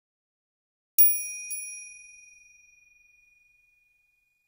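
A small bell chime struck twice, about half a second apart, ringing high and clear and fading out over about two seconds. It is a transition sound effect marking the break between stories.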